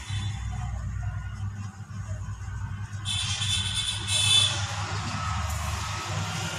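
Ballpoint pen writing on notebook paper, faint scratching over a steady low hum. About three seconds in, a higher-pitched sound with several tones comes in for about a second and a half and is the loudest part.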